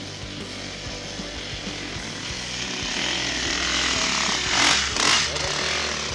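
Rock music playing over a dirt bike engine that revs up and grows louder, peaking in two surges about four and a half and five seconds in.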